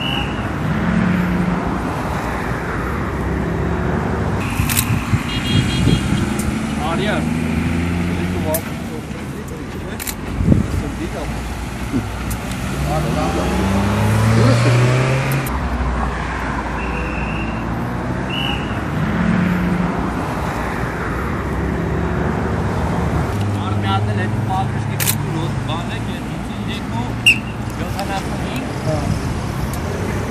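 Road traffic passing on a highway: car engines running and now and then pulling away with a rising pitch, over a steady background of road noise.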